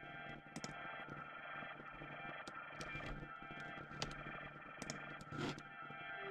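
Faint, steady ambient drone from an effects layer of a drum and bass track, several tones held together, with a few soft mouse clicks.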